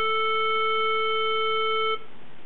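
Reference pitch A440 played by the Tempo Master app through an iPhone speaker: one steady held tone with overtones that cuts off suddenly just before the end.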